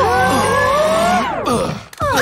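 Several voices together in one long drawn-out "ooooh", rising a little at first, then sliding steeply down in pitch and fading out just before the end.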